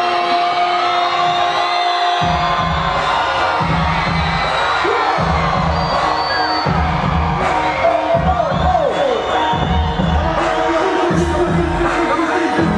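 Live music over a stage sound system, with a crowd cheering. A held note opens it, and a heavy repeating bass beat comes in about two seconds in.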